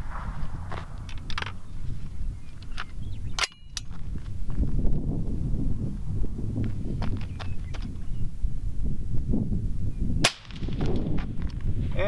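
Suppressed .224 Valkyrie AR-15 (JP SCR-11 with an AMTAC CQB556 5.56 suppressor) firing a single sharp shot about ten seconds in, peaking about 134.7 dB at the shooter's ear. A similar sharp crack comes about three and a half seconds in, over a low wind rumble on the microphone and small handling clicks.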